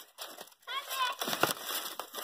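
Aluminium foil crinkling as it is peeled back off a food pan, with a faint voice in the background about a second in.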